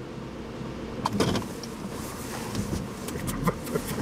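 Car running, a steady rumble with several sharp clicks and knocks starting about a second in.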